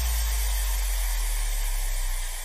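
The closing tail of an electronic dance mix: a sustained deep sub-bass note under a steady hiss of white noise, after the beat has dropped out.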